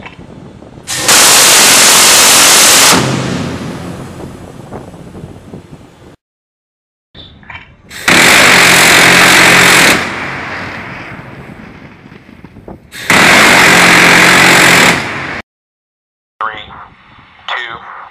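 Phalanx CIWS 20 mm six-barrel rotary cannon firing three bursts of about two seconds each. Each burst is one continuous buzzing roar, and each trails off over a few seconds after the gun stops.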